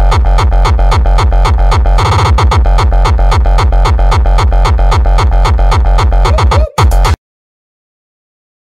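Loud electronic dance music with a fast, heavy kick drum, about four to five beats a second, over deep bass. It stutters briefly about two seconds in and stops abruptly about seven seconds in.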